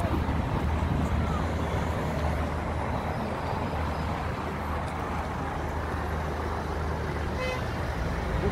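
Steady city street traffic: a continuous wash of passing cars, vans and buses over a low engine rumble.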